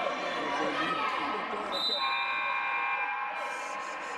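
Voices and calls of players and spectators echoing in a gymnasium during a basketball game, with a basketball bouncing on the hardwood floor. A steady, held pitched sound lasts for about two seconds in the second half.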